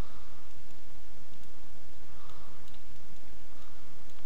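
A few faint, scattered computer mouse clicks over a steady low hum and hiss from the recording microphone.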